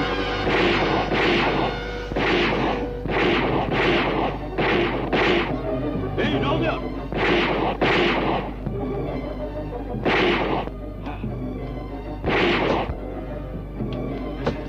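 Dubbed movie gunfire: about a dozen shots, each with a short ringing tail. They come in quick, uneven succession for the first eight seconds or so, then two more spaced out about ten and twelve seconds in, over a tense film score.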